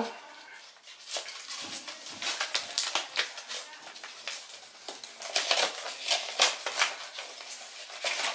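A mail package being opened: irregular rustling, crinkling and tearing of its packaging, busiest about five to six seconds in.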